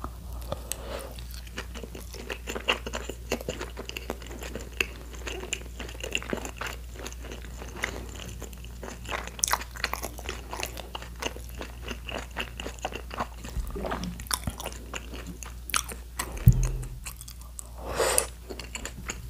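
Close-miked chewing of a mouthful of tteokbokki, with many small sharp mouth clicks. A low thump comes near the end.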